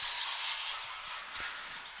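Quiet outdoor background: a faint, steady hiss that slowly fades, with one small click about two-thirds of the way through.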